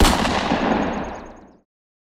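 A title-card impact sound effect: one sudden boom whose tail fades out over about a second and a half.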